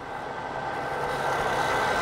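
Turning tool cutting a spinning bird's eye maple pen blank on a wood lathe: a steady rushing hiss of shavings coming off that grows slightly louder, with a faint steady whine underneath.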